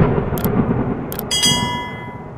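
Intro sound effects for a subscribe-button animation: a low rumbling boom fading away, two sharp mouse clicks, then a bright ringing chime about one and a half seconds in.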